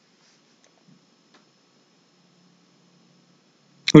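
Near silence: room tone with a few faint ticks about a second in, then speech starts at the very end.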